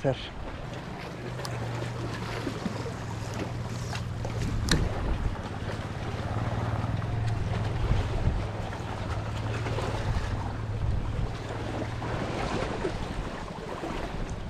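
A steady low hum, like a motor running, over wind and water noise. It fades out near the end. A single sharp click comes about five seconds in.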